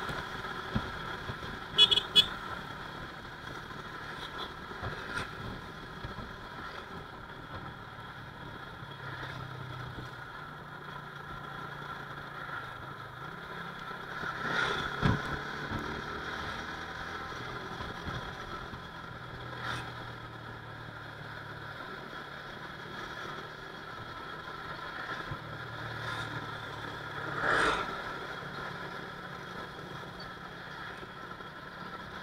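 Motorcycle riding along a road, its engine and road noise running steadily, with two short horn toots about two seconds in. Louder swells near the middle and near the end come from passing traffic.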